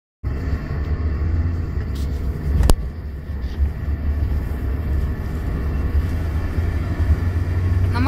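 Steady low rumble of a car driving along a snow-covered road, heard from inside the car. One sharp click sounds about two and a half seconds in.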